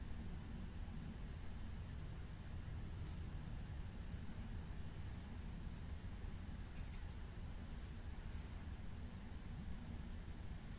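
Night insects trilling: one continuous, unbroken high-pitched trill, with a low rumble underneath.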